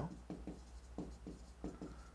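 Stylus writing on an interactive display screen: a run of faint, short scratching strokes as a word is written.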